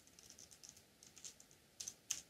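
Faint, quick typing on a computer keyboard: a run of light key clicks, a little louder near the end.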